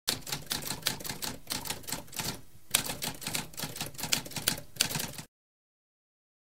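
Typewriter keys typing in a rapid run of clacks, with a short break about two and a half seconds in, stopping abruptly a little after five seconds.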